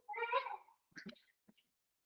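A faint animal call: a single short, high-pitched cry lasting under a second, followed by a few fainter short sounds and a click.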